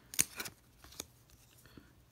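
UV-coated 1994 Topps baseball cards being peeled apart from a stack: two quick crackling snaps about a quarter second apart near the start, then a faint click about a second in. The crackle is the glossy coating of cards stuck together tearing loose, a sound typical of mid-90s cards.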